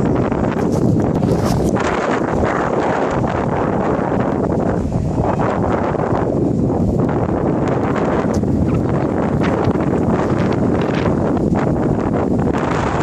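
Strong wind buffeting the microphone: a loud, steady rushing and rumbling with no let-up.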